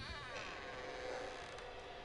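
A faint, steady buzzing drone with several held tones from a horror film soundtrack.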